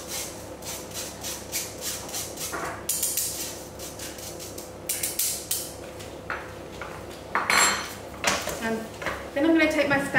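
A spoon scraping icing sugar through a metal mesh sieve over a stainless steel mixing bowl, in quick even strokes about three a second. A louder metallic clatter follows near the end as the sieve is moved away.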